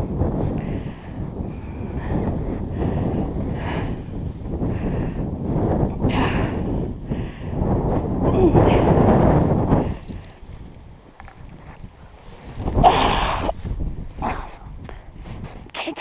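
Deep snow crunching and packing under gloved hands and knees, with jacket rustling, as a person struggles on all fours to push herself up; the shuffling is heaviest at the start and about eight to ten seconds in. A short voiced grunt of effort comes about thirteen seconds in.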